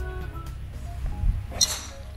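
Driver striking a golf ball off the tee: a single sharp metallic click with a brief ring, about one and a half seconds in, over background music.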